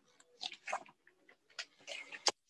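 Paper being handled close to the microphone: a few faint, short rustles, the first about half a second in and more near the end.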